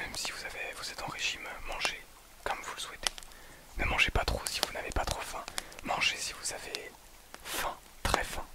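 A man whispering in French, close to the microphones.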